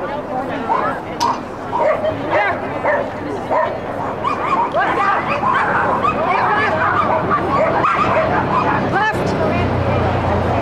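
A collie barking over and over in short barks while running an agility course, over background voices.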